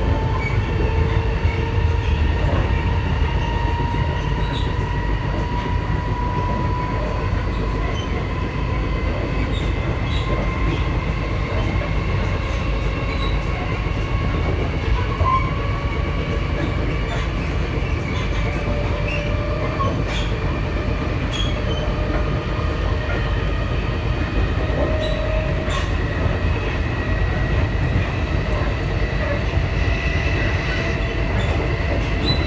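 Taiwan Railways Tze-Chiang express train running at speed, heard from inside the carriage: a steady rumble of wheels on rail with faint whining tones that drift slowly in pitch, and scattered short clicks.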